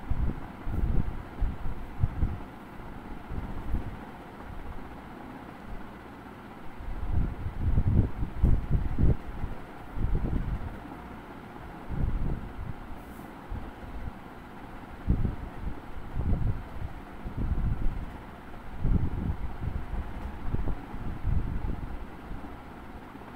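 Irregular low rumbling gusts on the microphone, several surges a second or so long, over a faint steady hiss.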